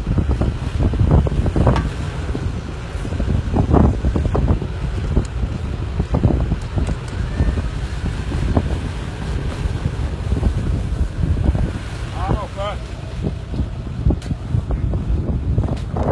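Strong wind buffeting the microphone in gusts, with a brief voice about twelve seconds in.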